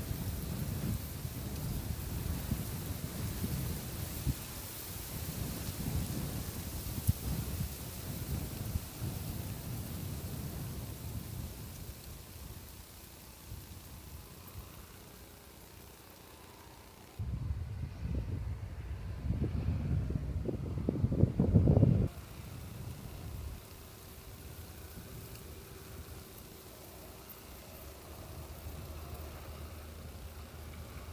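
Wind buffeting the microphone in uneven low rumbling gusts, heaviest for several seconds after the middle and then stopping suddenly. The John Deere 6930 tractor's engine is faint and steady underneath, clearest near the end.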